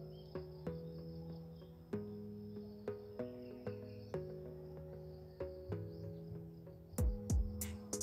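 Background music of sustained, keyboard-like notes that change every half second or so, with a drum beat coming in near the end. Crickets chirr steadily underneath.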